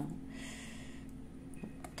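A woman's quiet, drawn-out hesitation hum ('euh') held on one steady pitch, with a light click near the end from the card box being handled.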